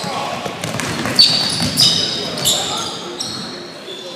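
Basketball game on a hardwood gym floor: a ball bouncing and several short high squeaks of sneakers as players run and cut, over voices in a large echoing gym.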